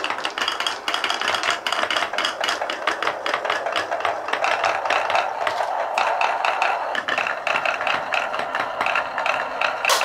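A stream of billiard-ball marbles rolling through a wooden marble run, clacking against the wooden track and against each other in a dense, steady rattle of clicks.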